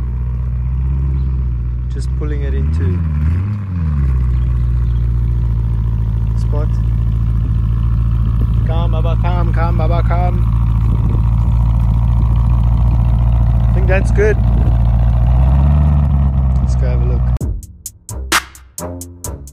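Lamborghini Urus S's twin-turbo V8 idling with a low, steady note; its pitch wavers up and down about two to four seconds in and rises briefly near the end.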